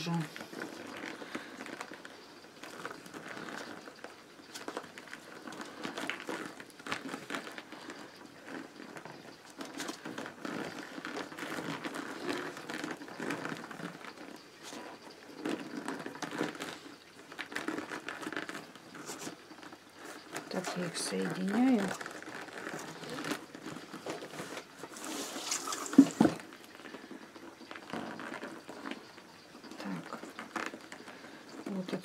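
Rolled newspaper tubes rustling and crinkling in the hands as they are woven in a three-rod wale over a plastic bowl form, with irregular soft scraping. A single sharp knock comes near the end.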